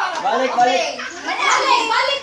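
A group of people chattering and calling out over one another, with no single voice clear; the din briefly drops about halfway through.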